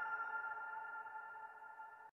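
The fading tail of a channel intro jingle: a held chord of several steady tones dying away.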